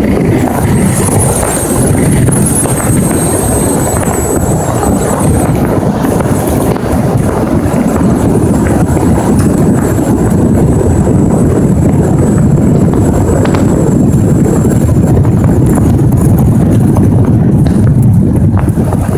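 Steady rumble of a vehicle driving at speed, with wind buffeting the microphone; a faint high whine sits above it for stretches.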